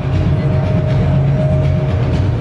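Loud, steady low rumble with a faint held mid-pitched tone: the din of a large, crowded exhibition hall.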